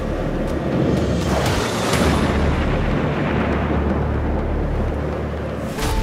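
Deep, rolling rumble of thunder under a background music bed.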